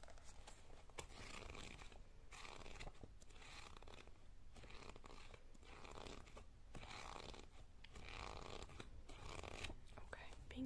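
Long fake nails scratching and rustling over a paperback book, its cover and pages, in soft strokes about one a second.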